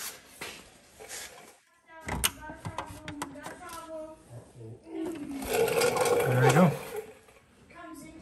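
Indistinct human voice, drawn-out and unclear, loudest past the middle, with a sharp click about two seconds in.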